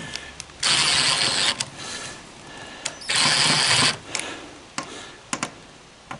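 Cordless impact driver driving a screw through a stainless steel strap bracket into a boat deck, in two bursts of about a second each, the second about three seconds in, with a few small clicks after.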